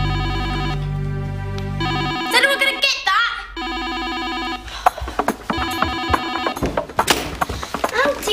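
An electronic trilling ring in three bursts: the first lasts about two seconds over a low hum, and the next two are shorter. Between the first and second bursts there is a short warbling glide.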